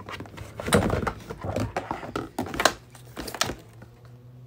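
Pink cardboard gift box being handled and opened: rustling with a run of sharp taps and thunks, the loudest about a second in and near three seconds.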